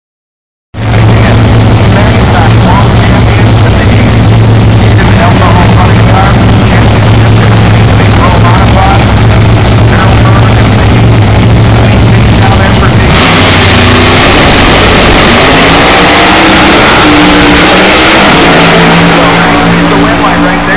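A drag-racing car's engine running loud and steady at the start line, a low drone that overloads the phone's microphone. About thirteen seconds in it launches at full throttle, the engine pitch climbing several times as the car runs down the strip.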